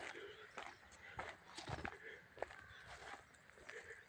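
Footsteps of a person walking over gravel and ground beside the tracks, soft crunches at about two steps a second.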